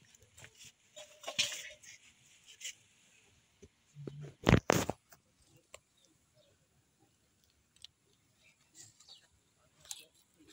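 Light rustling and crackling of fingers pulling small white mushrooms out of crumbly soil and rotting wood, with two loud bumps about halfway through.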